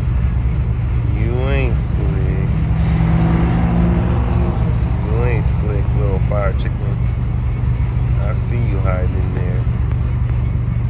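1967 Pontiac Firebird (in a Camaro body) engine idling with a steady, deep rumble, with people's voices heard over it several times.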